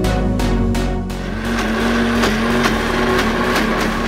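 Background music with a beat, then from about a second in an electric mixer grinder's motor running with a steady hum and grainy whirr as it coarsely grinds soaked chana dal.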